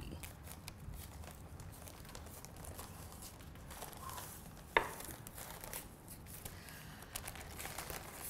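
Sheets of paper crinkling and rustling as they are peeled off rolled-out pie crust dough, with one sharp tap about halfway through.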